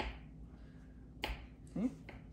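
Small kitchen knives chopping black olives on a wooden cutting board: two sharp knocks of the blade against the board, one at the start and one just past a second in.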